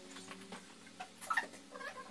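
Glass aquarium panes being handled with gloved hands: scattered light taps and clicks, and a short squeak a little past halfway, the loudest sound here. A faint steady hum sits underneath.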